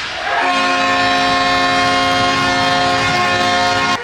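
Loud, steady multi-note horn chord sounding for about three and a half seconds, then cutting off suddenly.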